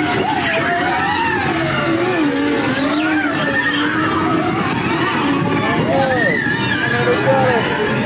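Dark-ride show soundtrack from an onboard recording: music mixed with long, wavering, gliding wails that rise and fall.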